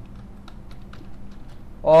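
Computer keyboard being typed on: a few soft, scattered key clicks, then a man's voice starts near the end.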